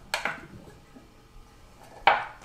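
Prying at the lid of a small metal can of wood stain: a couple of sharp metal clicks near the start, then faint handling.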